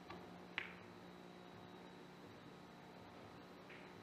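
A single sharp click of a cue striking a carom ball in a three-cushion shot about half a second in, then a much fainter knock near the end, over a quiet hall.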